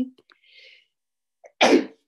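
A single short, loud sneeze about one and a half seconds in, after a faint breath.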